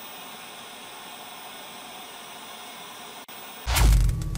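TV-static hiss sound effect, steady, with a brief cut-out just after three seconds. Near the end it gives way to a loud deep hit with a falling sweep.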